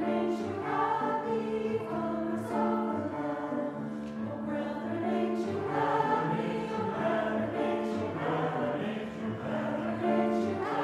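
Church chancel choir singing an anthem in several voice parts, holding long chords that change every second or so.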